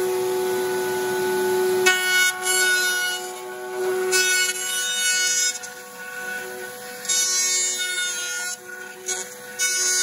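Table-mounted router running with a steady high whine, its 45-degree bearing-edge bit cutting the edge of a wooden drum shell as the shell is turned against it. The cutting comes in several louder bursts, starting about two seconds in.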